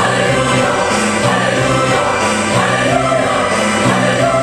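Mixed church choir of women's and men's voices singing a hymn in parts, holding sustained chords that move from note to note.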